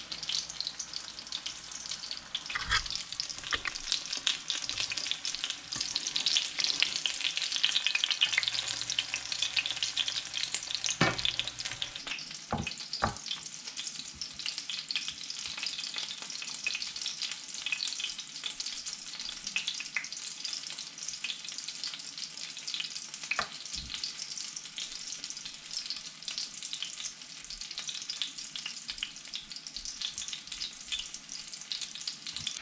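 Panko-breaded pollock fillet frying in shallow oil in a pan, a steady crackling sizzle, loudest in the first third. A few sharp knocks sound over it.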